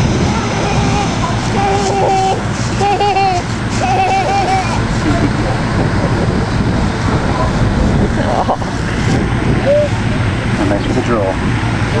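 A toddler's few short sing-song calls, a couple of seconds in, over a steady loud rumble of wind on the microphone.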